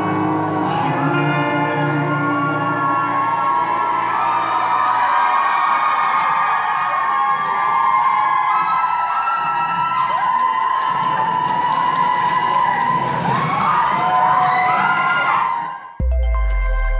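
The last bars of a K-pop dance track, whose bass beat stops about five seconds in, giving way to a studio audience cheering and screaming in high voices.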